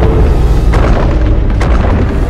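Movie sound effects of a violent quake: deep continuous rumbling with booms and a couple of sharper cracks, over dramatic score music, as the ice chamber shakes apart.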